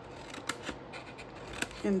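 Scissors snipping the tabs of a scored kraft cardstock box template: a few short, crisp cuts.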